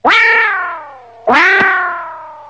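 A loud, cartoonish meow-like sound effect, played twice. Each tone starts sharply and slides slowly down in pitch as it fades.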